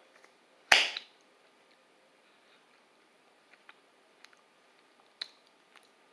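Mouth sounds while chewing sticky cream fudge: one sharp, loud smack about a second in, then a few faint clicks.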